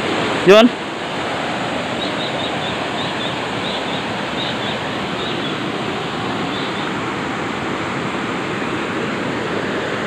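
Steady rushing of river water running over rocks in a small cascade.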